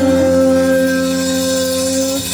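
Live band music: a long note held steady at one pitch over a sustained low bass.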